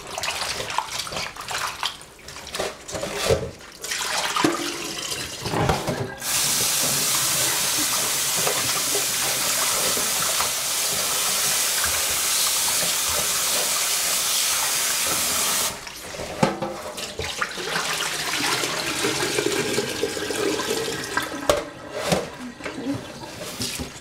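Kitchen tap running into a stainless steel pot of raw chicken wings being washed in the sink: a steady rush that starts suddenly about six seconds in and cuts off about ten seconds later. Before and after it, gloved hands rub and turn the wings in the pot, with scattered knocks against the metal.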